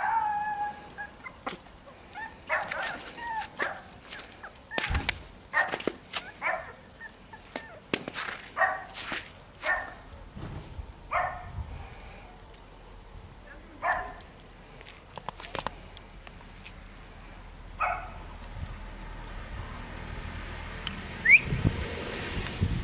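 A small dog barking: about fifteen short, high-pitched barks at irregular intervals, bunched most thickly in the first ten seconds and stopping a few seconds before the end.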